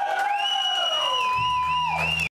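Electric guitar feedback ringing out through the amplifiers at the end of a song: sustained high tones that slide slowly in pitch, with a second, higher tone coming in just after the start and wavering. A low bass drone joins about a second and a half in.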